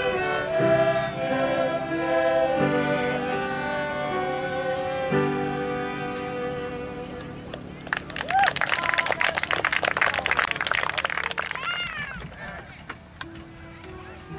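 A group of violins plays a tune together, the notes changing in steps, and the music fades out about seven seconds in. Applause follows for about four seconds, then dies away.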